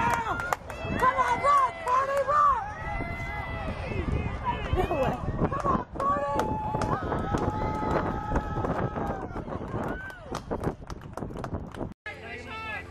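Players and spectators shouting and cheering during a softball play, with long drawn-out calls and scattered sharp clicks or knocks.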